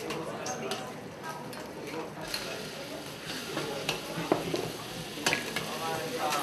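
Metal spatula scraping and knocking against a steel wok while ground chili paste sizzles in hot oil, stir-fried over a gas flame. The strokes come irregularly, with a few louder knocks in the second half.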